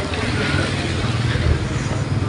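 A steady low engine drone of a motor vehicle running nearby, with faint voices in the background.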